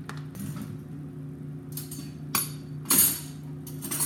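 A utensil knocking and scraping against a blender jar full of thick puréed soup, with a few sharp clinks spread through the second half; the loudest comes about three seconds in.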